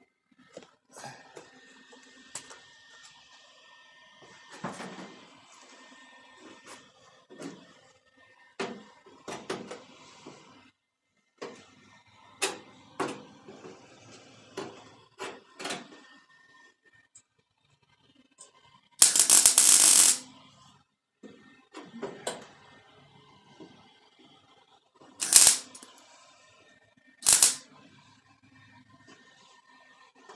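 Welder laying tack welds on a sheet-steel quarter-panel seam: one crackling burst of about a second two-thirds of the way in, then two short ones about two seconds apart near the end. Light clicks and taps from handling the work come in between.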